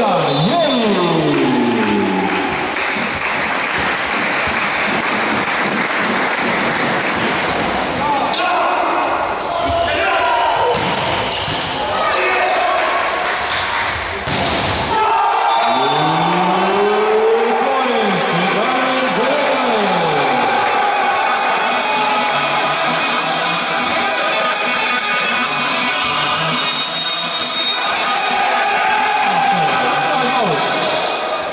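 Indoor volleyball match in a large, echoing hall: sharp smacks of the ball during a rally over crowd and player shouts, with arena music playing.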